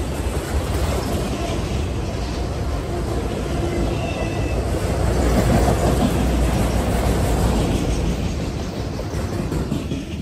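Freight train of autorack cars rolling past: a steady rumble and rattle of steel wheels on rail, easing off a little near the end as the last cars go by.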